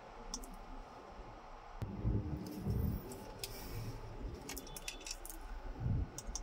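A scattering of light clicks and taps from pressing the Chery Tiggo 5X's dashboard buttons to switch on the infotainment screen, with a few dull low bumps in the middle.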